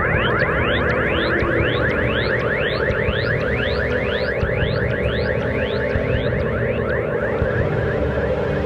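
Electronic synthesizer credits music: a steady low drone under fast, repeated rising sweeps, like sci-fi laser zaps. The sweeps come about four a second at first, slow down, and fade out near the end, leaving the drone.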